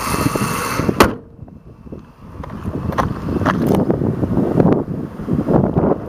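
A 2005 Ford Taurus's 3.0-litre six-cylinder engine running steadily, heard with the hood open. About a second in, a single loud slam, likely the hood being shut; after it the engine is muffled and wind rumbles on the microphone.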